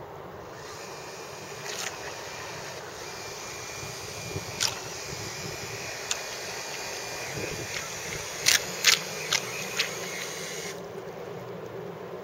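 Six small geared electric motors of an RC model boat whining faintly as it runs fast across the water, over a steady outdoor hiss. A few sharp clicks come near the end, the loudest four quickly one after another.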